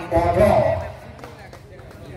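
Mostly speech: a man's commentating voice in the first second, then a quieter stretch of faint background noise.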